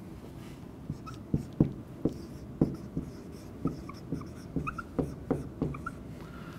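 Dry-erase marker writing a word on a whiteboard: a run of short strokes, several a second, some of them squeaking.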